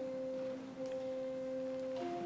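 Church organ sustaining soft held notes with a pure, flute-like tone; the upper note drops away about half a second in.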